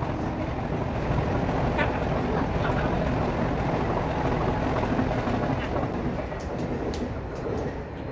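A steady rumble that eases a little near the end, with faint voices over it.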